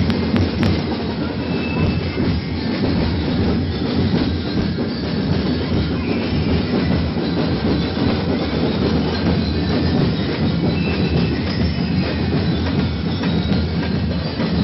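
Ati-Atihan street-parade percussion band drumming, heard as a loud, dense, unbroken din of many strikes with no clear beat standing out.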